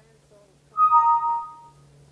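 Doorbell chime ringing two notes, a higher note followed at once by a lower one, both held for about a second and fading out together.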